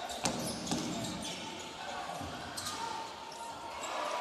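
Basketball being dribbled on a hardwood court: a few sharp bounces over the steady noise of a sports hall.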